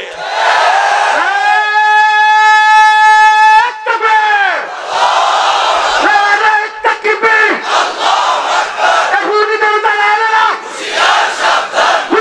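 A man shouting slogans through a loud PA microphone, holding one long drawn-out call about a second in, and a large crowd shouting back in response, call and answer.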